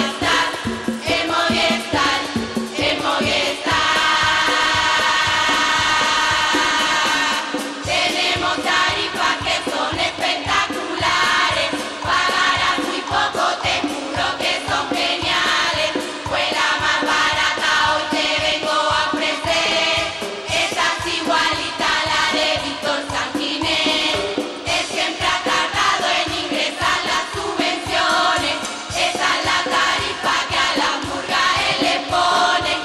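Carnival murga chorus singing together to a steady beat, with one long held chord a few seconds in.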